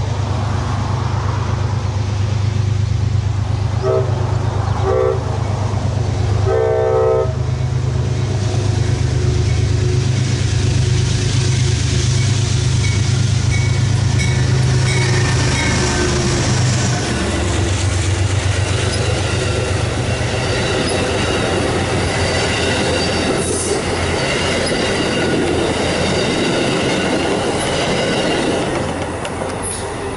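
Amtrak passenger train led by GE P32AC-DM locomotive 703 passing close by. The diesel engine's low drone carries through the first half, and there are three horn blasts about four to eight seconds in, two short and then a longer one. In the second half the passenger cars go by with a clatter of wheels over the rail joints.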